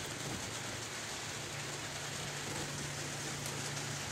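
Steady, even background noise with a constant low hum beneath it; no separate knocks or rustles stand out.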